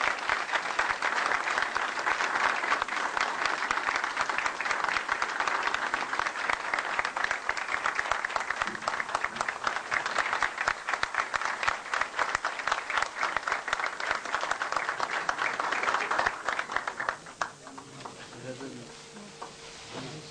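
Audience applauding steadily for about seventeen seconds, then dying away near the end.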